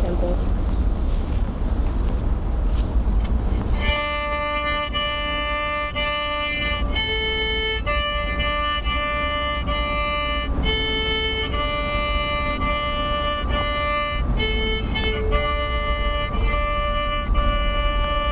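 A child's small violin playing a simple beginner tune in short held notes that step up and down in pitch, starting about four seconds in. Before the notes there is a noisy rumble.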